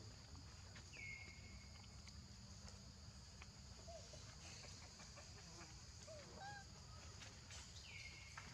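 Faint forest ambience: a steady high insect drone, with a clear whistled call that drops in pitch and holds about a second in, another near the end, and a few soft short chirps in between.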